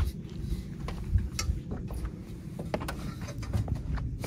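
Shoes and hands knocking on the rungs of an Owl rear van ladder as someone climbs it: scattered light clicks and knocks over a steady low rumble.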